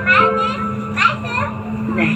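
A child's high-pitched voice calling out twice, at the start and about a second in, over a steady low hum.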